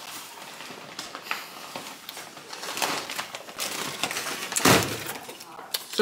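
Paper food wrappers and a paper takeout bag rustling and crinkling as food is unwrapped and eaten, a quiet run of crackles with one louder sharp burst near the end.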